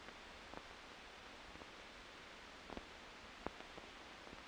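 Near silence: the faint steady hiss of an old film soundtrack, with a few faint clicks.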